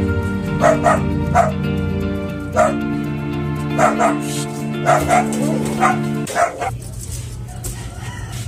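A dog barking in about ten short, separate barks spread over several seconds, over soft background music with held chords that stops about six seconds in.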